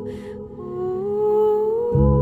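Background music: a slow, wordless melody of held notes that glides upward in pitch through the second half, with a brief hiss near the start. A deep bass comes in at the very end.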